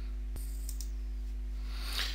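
Steady low background hum with one short click about a third of a second in.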